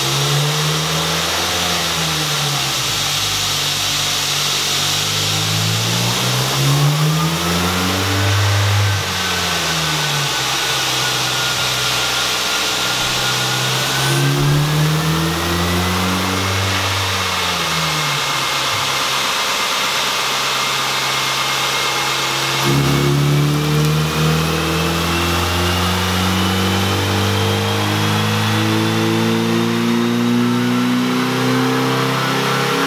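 Ford Focus four-cylinder engine, fitted with an aftermarket intake and header, running on a chassis dyno. Its revs rise and fall three times as it is run up through the gears, while a thin whine climbs steadily in pitch. A little over two-thirds of the way in, the engine note jumps and the revs climb steadily for the full pull.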